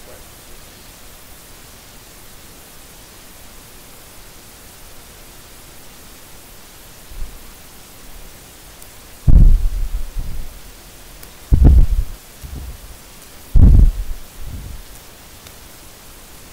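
Steady hiss from the recording, then three loud, low rumbling thumps about two seconds apart in the second half: handling noise on the lecturer's microphone as he moves.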